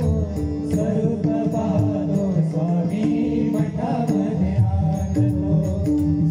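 Live devotional bhajan music: harmonium with pakhawaj and tabla drumming, and voices chanting.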